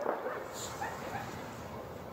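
Dogs barking faintly in the distance over quiet night-time town ambience.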